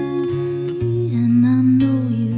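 A woman's voice sings one long held note over a softly played acoustic guitar, dropping to a lower note about a second in and holding it with a slight waver.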